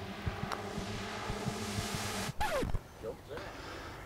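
Faint click of a putter striking a golf ball about half a second in, over a steady outdoor hiss. A little past halfway comes a brief falling vocal exclamation as the putt slides by and stops beside the hole.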